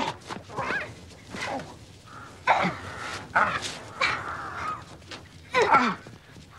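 Young girls shrieking and squealing in rough play: a string of short, high, wavering cries, the loudest near the end.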